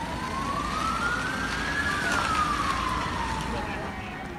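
Emergency vehicle siren wailing: one slow sweep rising in pitch for about two seconds, then falling for the next two, over the noise of a busy street.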